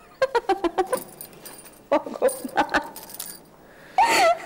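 A woman giggling in two short runs of laughter, the second starting about two seconds in.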